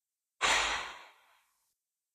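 A single sigh: a person's breath pushed out, starting about half a second in and fading away within about half a second.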